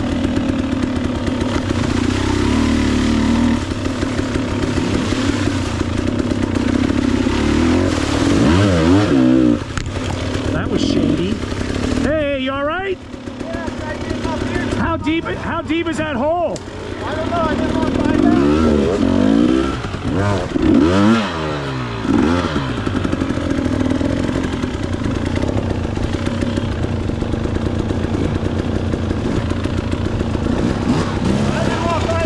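Dual-sport motorcycle engine revving up and down over and over under load in deep mud, its pitch rising and falling. The revs dip sharply a couple of times about midway, then pick up again.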